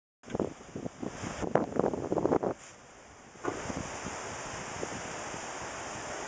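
Strong wind buffeting the microphone in loud, irregular gusts for about the first two and a half seconds. After a short lull it settles into a steady rushing of wind.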